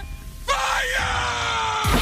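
A person's long yell, starting about half a second in and falling slightly in pitch, over a music track; a sharp bang comes just before the end.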